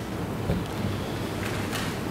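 Steady hiss of an open microphone in a quiet room, with a soft knock about half a second in and a short breathy rustle near the end.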